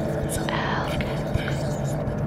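Whispering voices over a steady low ambient drone.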